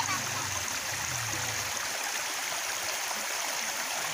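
Shallow rocky stream flowing over stones: a steady, even rush of water.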